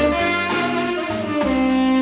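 Tenor saxophone playing a mood-style instrumental melody with band accompaniment; about one and a half seconds in it settles into a long held note.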